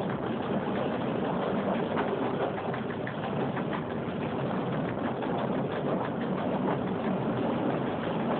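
Steady running noise heard from inside the cab of an EN57 electric multiple unit moving at about 40 km/h: wheels rolling on the rails with the hum of the train's running gear and motors.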